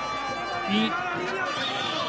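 Male TV football commentary in Spanish, a brief word in a pause, over the steady background noise of a stadium crowd.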